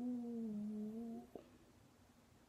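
A young woman's drawn-out "ooh", sliding down in pitch and then held steady, that stops a little over a second in, followed by a small click.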